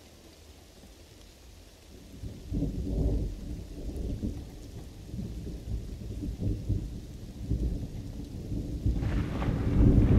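Rolling thunder over faint rain. The low rumble starts about two and a half seconds in, rises and falls in waves, and swells louder and brighter near the end.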